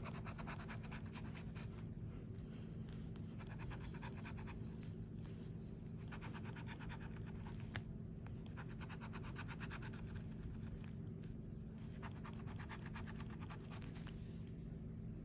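A scratch-off lottery ticket's latex coating being scraped off with a handheld scratcher, in quick runs of rapid strokes separated by short pauses. A low, steady hum runs underneath.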